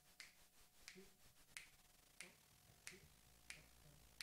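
Faint finger snaps, six of them evenly spaced at a little over one and a half a second, counting off the tempo before a jazz big band starts a tune.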